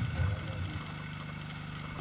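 The end of a spoken phrase, then a steady low hum through the pause.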